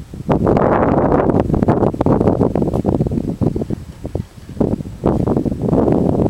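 Wind buffeting the camera's microphone in two long gusts, with a brief lull a little past the middle.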